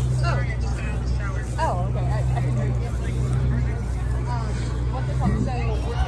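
Chatter of people talking in a crowd over a steady low rumble.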